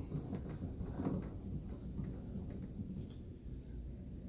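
Drill press table being cranked up its column by hand: a faint, uneven low rattle with a few light clicks from the table's lift mechanism.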